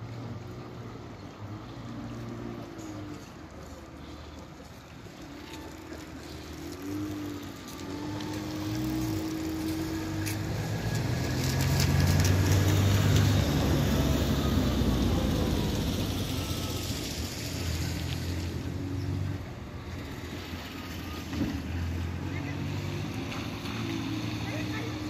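Small outboard motor on an inflatable boat running on a fast, flooded river, its pitch shifting as the boat manoeuvres. A wash of wind and rushing water swells to its loudest about halfway through.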